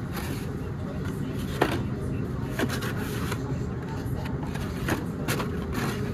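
Hot Wheels blister-pack cards being flipped through in a cardboard display, giving a handful of sharp plastic clicks and clacks over a steady low rumble.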